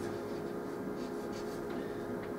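Chalk scraping on a blackboard in a few short, light strokes as a curve is traced over.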